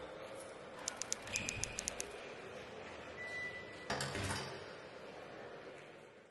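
Title-sequence sound effects over a steady hiss: a quick run of about eight sharp clicks, a short thin beep, then a heavier knock with a low rumble, before the sound fades out.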